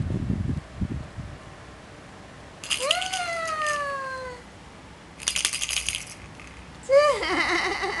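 A baby's high squeals, each sliding down in pitch, about three and seven seconds in, mixed with bursts of jingling rattle from a dangled rattle toy being shaken. A few low thumps in the first second.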